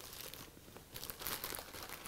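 Plastic inner bag of dry yellow cake mix crinkling faintly as it is tipped and shaken, the mix pouring into a plastic bowl.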